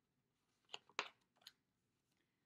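Pages of a picture book being turned by hand: three brief papery rustles, the loudest about a second in.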